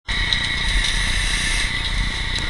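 Fire burning close to a helmet-mounted camera: a steady low rumble with a few sharp crackles, over a constant high-pitched whine.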